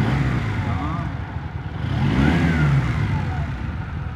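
Honda CM125 Custom's air-cooled parallel-twin engine running in neutral and revved with the throttle: a short blip right at the start, then a bigger rise in revs about two seconds in that falls back toward idle. This is an engine test.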